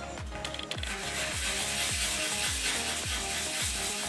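A small piece of Baltic amber being rubbed by hand on 800-grit sandpaper, a steady scratchy rasp that builds up about a second in. Under it runs background tropical-house music with a thudding beat about twice a second.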